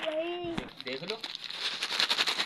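A drawn-out voice sound at the start, then rapid crinkling and rustling of a plastic packet being handled through the second half.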